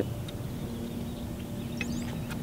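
Outdoor background noise with a faint steady low hum and a few faint, high bird chirps near the end.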